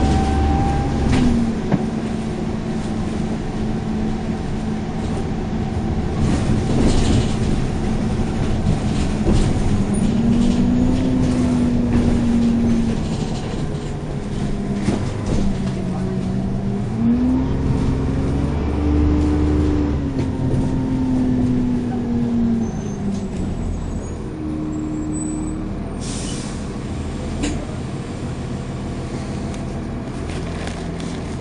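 Dennis Trident 2 double-decker bus heard from the lower deck, its diesel engine working hard: the engine note climbs and drops several times as the automatic gearbox changes up, over a steady rumble. Body and seat fittings rattle throughout, and there is a brief hiss near the end.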